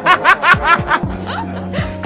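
A man laughing in a quick run of short bursts for about a second. Then background music with deep, falling bass-drum hits carries on.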